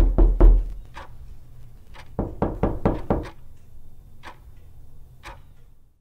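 Knocking: a deep thump, then sharp knocks, a quick run of about six between two and three seconds in, then two lone knocks a second apart, fading away.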